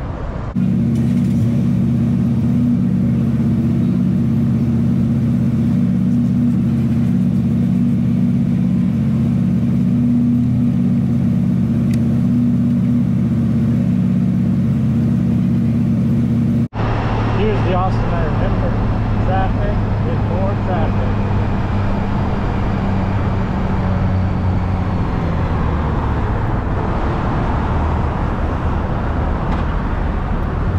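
A loud, steady low hum with several even tones runs for the first part. About 17 seconds in it cuts sharply to a 2016 Honda Gold Wing F6B's flat-six engine and road noise as the motorcycle rides slowly in traffic.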